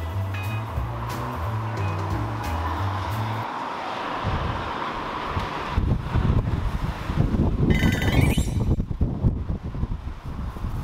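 Background music with a stepped bass line that stops about three and a half seconds in, giving way to wind buffeting the microphone outdoors, rumbling and gusty from about six seconds on. A brief high whistle-like sound rises and falls near eight seconds.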